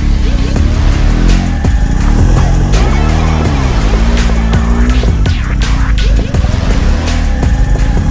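Adventure motorcycle's engine revving up and down as the throttle is worked over a rough, rutted dirt trail, with a rise and fall in pitch about three seconds in. Music plays in the mix as well.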